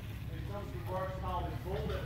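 People talking, words unclear, over a steady low rumble.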